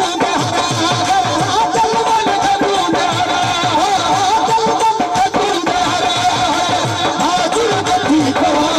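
Live Sindhi folk music: a harmonium melody over a steady dholak beat, with the drum's bass head sliding down in pitch on many strokes.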